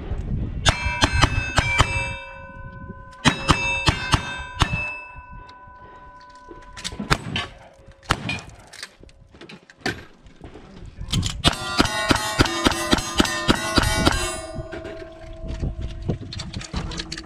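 A string of gunshots in quick bursts, each answered by the ring of struck steel targets at a few fixed pitches. The dense run of shots and rings from about eleven to fourteen seconds is the busiest part.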